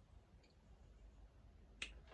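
Near silence: room tone, with one sharp, brief click just before the end.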